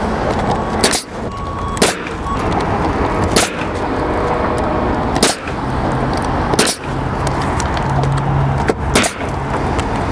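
Pneumatic coil roofing nailer firing nails through asphalt shingles: six sharp shots, one to two seconds apart, over a steady background noise.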